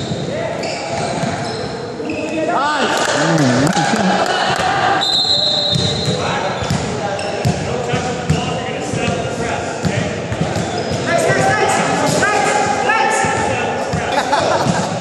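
Pickup basketball game on a hardwood gym floor: the ball bouncing and knocking, and bursts of short high squeaks from sneakers, with players' voices echoing in the large hall.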